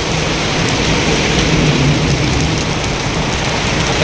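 Heavy storm rain pouring down, a loud, steady, even rush of noise.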